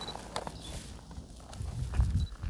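A few footsteps crunching on gravel, spaced out and fairly faint.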